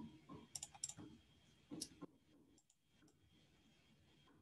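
A handful of faint clicks from a computer mouse and keyboard in use, bunched in the first two seconds, then near silence.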